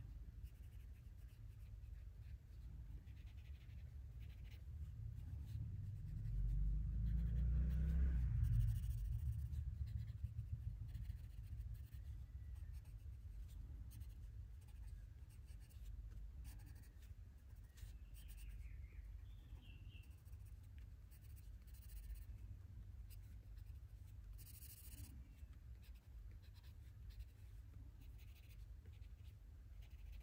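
Soft scratching of a wax-based Prismacolor Premier coloured pencil on paper in short, repeated shading strokes. A low rumble underneath swells louder about six to nine seconds in.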